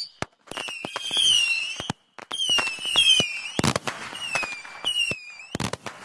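Cartoon firework sound effects: repeated whistles gliding down in pitch, broken by sharp cracks, with two louder bangs, one just past the middle and one about a second before the end.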